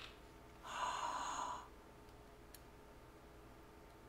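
A person sighing out one breath, about a second long, during a tense wait.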